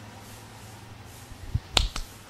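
Quiet room tone, then near the end a soft low thump followed by two sharp clicks in quick succession.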